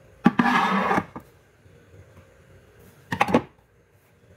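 Metal sardine tins being handled on a pantry shelf: a knock as a tin is set down, about half a second of scraping as it slides along the shelf, a light click, then another short double knock near the end.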